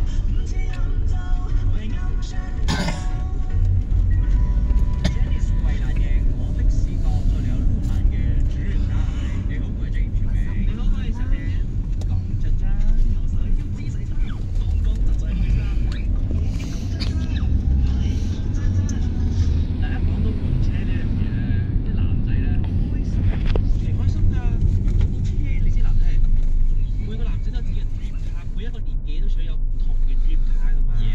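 Low, steady rumble of a car's engine and road noise heard from inside the cabin as it moves slowly in traffic.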